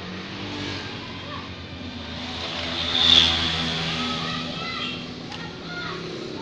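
A passing motor vehicle's engine, growing louder to a peak about halfway through, then fading away.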